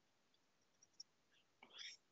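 Near silence: room tone, with a faint tick about halfway through and a faint breathy voice sound near the end.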